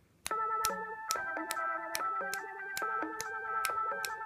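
Korg Volca Beats, Volca Bass and Volca Keys synthesizers playing a looping electronic pattern that starts abruptly about a quarter second in, with sharp percussive hits roughly every 0.4 s over sustained synth notes. The tempo follows finger snaps picked up by the laptop's built-in microphone.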